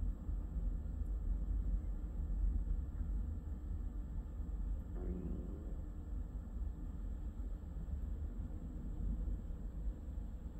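Low, steady rumble of a freight train's tank cars rolling past at a distance, with a brief higher-pitched sound about halfway through.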